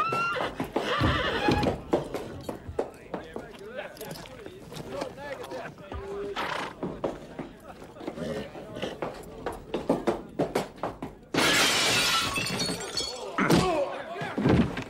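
Film soundtrack of a tense standoff breaking into a scuffle: a man laughs just after the start, with scattered knocks and thumps. About eleven seconds in there is a sudden loud crash, like something breaking, lasting a second or two.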